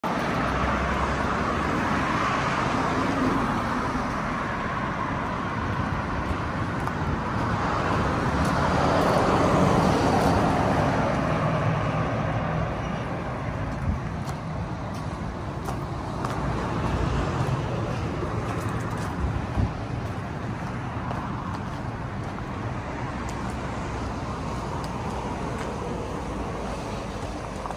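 Road traffic: cars passing one after another on a nearby road, the loudest swell about ten seconds in, then a steadier, lower background. From about halfway through, scattered short crunches of footsteps on gravel.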